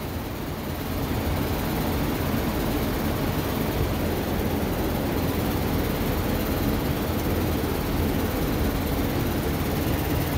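A steady low drone of machinery running evenly, with no rhythm or change in pitch.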